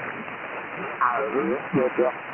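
HF single-sideband receiver audio on the 15 m band: band noise hiss for about a second, then a ham station's voice coming through, thin and cut off above the sideband filter.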